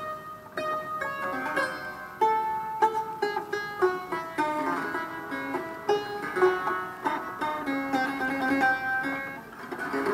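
Clavichord played: brass tangents strike the strings in a flowing passage of short notes, several sounding together, with a brief lull just before the end.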